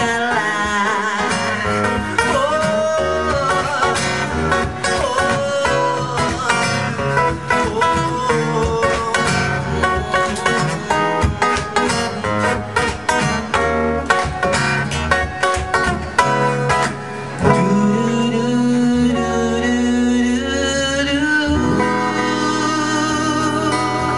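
Acoustic guitar with a male voice finishing a sung line at the start, then an instrumental guitar passage: a quick run of picked single notes, settling into slower held chords near the end.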